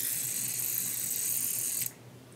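Refillable oil mister spraying cooking oil onto a wooden rolling pin: a steady hiss that cuts off suddenly shortly before the end.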